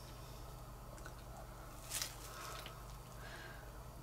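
Faint handling sounds of a silicone mixing cup and wooden stir stick while epoxy resin is poured into a mold: one brief soft scrape about two seconds in, over a low steady hum.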